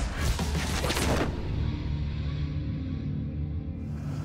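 Dramatic soundtrack music with a low sustained drone, over a quick run of swishing cuts in about the first second as a knife blade slices through nylon cargo straps.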